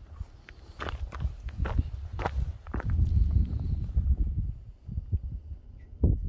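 Footsteps on stony, gravelly ground: several sharp scuffs in the first three seconds, over a low rumble.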